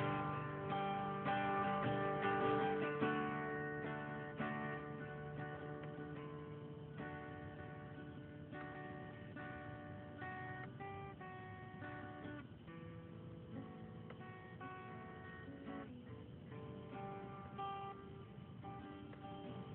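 Guitar playing: plucked notes and chords in a slow, steady run, louder for the first few seconds and then softer.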